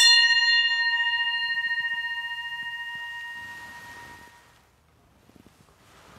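Altar bell rung once at the elevation of the consecrated host. Its clear tone fades away over about four and a half seconds with a slight wavering.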